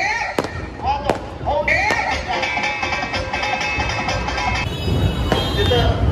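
Fireworks going off, with a few sharp bangs in the first two seconds, over loud amplified singing and music from a festival stage.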